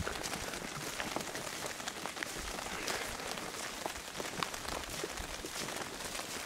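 Light rain pattering on an umbrella: a steady hiss dotted with many small, irregular drop ticks.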